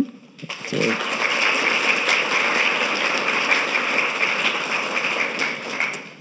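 Audience applauding, a steady clapping that starts about half a second in and carries on throughout.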